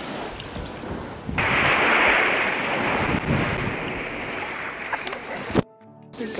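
Shallow sea water washing and splashing close to the microphone, with wind noise on the microphone. It turns suddenly louder about a second and a half in and cuts off abruptly just before the end.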